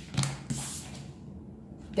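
A tarot card being drawn from the deck and laid on a wooden table: a quick tap, then a second tap with a short papery slide.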